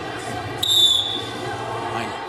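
A referee's whistle blown once, a short, high, steady blast about half a second in, starting the wrestling bout. Under it is the steady murmur of an arena crowd.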